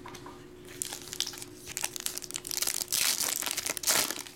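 Foil wrapper of a Topps Finest trading card pack being torn open and crinkled by hand. It starts about a second in and is loudest near the end.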